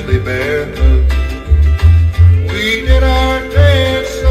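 Instrumental break of a country song, with no singing: bass notes on a steady beat under a plucked-string melody.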